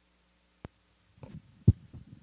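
Computer keyboard typing heard as dull taps through a laptop microphone: a single click just over half a second in, then an irregular run of keystrokes from about a second in, the loudest near the end. A faint steady hum underlies the first half.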